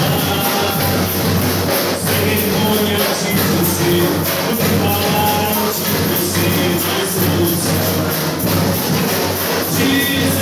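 Brazilian carnival bloco music played loud and continuous with a steady beat, driven by percussion that includes a surdo bass drum.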